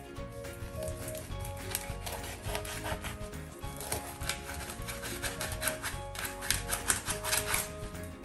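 Kitchen knife scraped in quick repeated strokes along the skin of a whole fish on a plastic cutting board, scaling it; the strokes come thick and fast and are loudest near the end.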